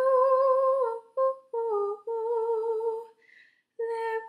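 A young woman's voice singing alone, without accompaniment: wordless held notes with vibrato. A long note is followed by three shorter, lower-falling notes, then a short breath pause before the next note near the end.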